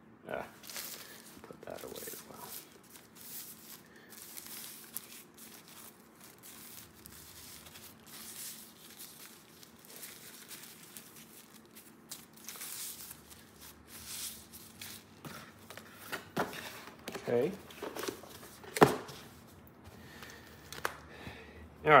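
Paper and card packaging rustling and crinkling in irregular spells as it is handled, with one sharp tap a few seconds before the end.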